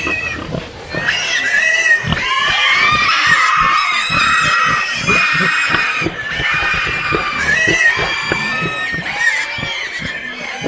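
Death metal song: high-pitched, pig-like squealing vocals over drums and distorted guitars.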